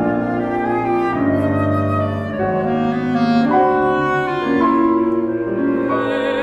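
Chamber ensemble playing contemporary classical music: an instrumental passage of clarinet over piano and cello, with held notes moving from pitch to pitch.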